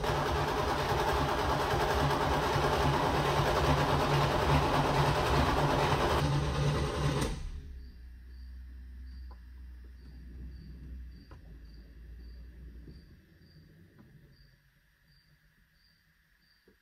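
The starter cranks a 1987 Camaro Z28's V8 steadily for about seven seconds without it catching, then stops suddenly. A much quieter hum from the electric fuel pump gurgling follows with a few faint ticks, fading out a few seconds before the end.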